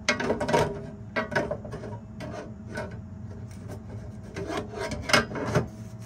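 The metal case of a Victron MultiPlus-II inverter sliding and scraping on a granite countertop as it is turned around, with several irregular knocks, the loudest at the very start and about five seconds in.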